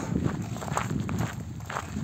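Footsteps of a hiker walking on the dry earth of a ploughed field: several soft, irregular steps over a low rumbling background.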